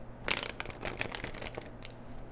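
Tarot cards being handled: a quick flurry of papery flicks and rustles starting about a quarter second in and lasting about a second, with a couple of fainter flicks after.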